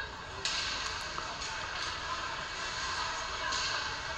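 Ice hockey arena ambience: a steady hiss of skates and sticks on the ice with a crowd in the background, picking up slightly about half a second in as play gets going.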